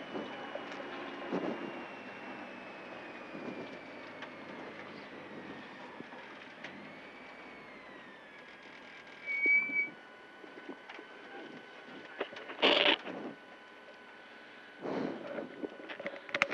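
Nissan 240SX rally car running quietly at low speed, heard from inside the cabin, its faint engine note falling slowly as it slows. Three short louder noises break in during the second half.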